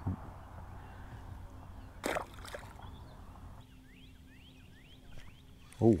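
Quiet outdoor pondside ambience with small birds chirping faintly in short rising notes. There is one brief sharp noise about two seconds in.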